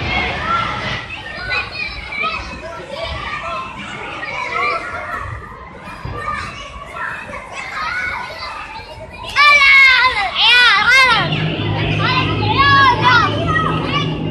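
Many children shouting and squealing at once as they play in an indoor soft-play frame, with a burst of loud, high-pitched shrieks about two-thirds of the way through. A steady low hum comes in just after the shrieks and stays under the voices.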